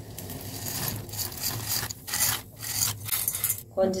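Dry fusilli pasta and a steel slotted spoon scraping and rattling against steel vessels as the pasta is tipped into a pot on the stove and stirred, in several short, rasping strokes.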